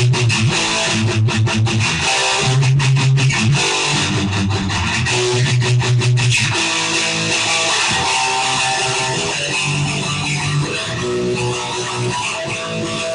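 Instrumental punk rock with electric guitar and bass, no vocals. Chopped, rapid chords with heavy bass notes for the first six seconds or so, then a smoother, more sustained passage.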